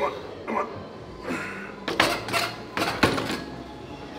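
Loaded barbell clanking against the metal hooks of an incline bench press rack, with sharp metal knocks about two seconds in and again about three seconds in.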